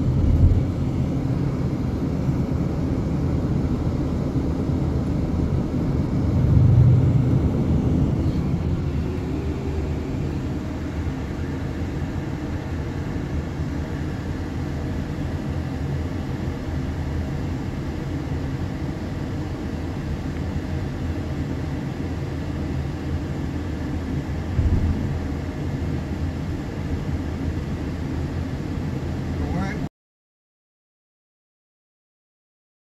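Steady low rumble of road and engine noise heard from inside a moving car's cabin, swelling louder for a couple of seconds about seven seconds in.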